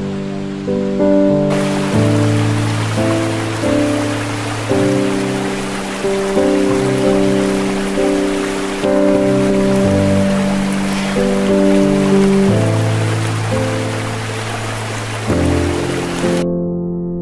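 Slow, calm electric piano chords, each struck softly and left to fade, with a new chord about every second. A steady hiss of water runs beneath the music from about a second and a half in.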